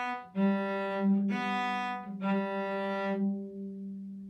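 Cello played with the bow, crossing back and forth between the A and D strings on long notes. It goes B, G, B, then a held G that fades away near the end. The left-hand fingers are set on both strings so only the bow moves between them.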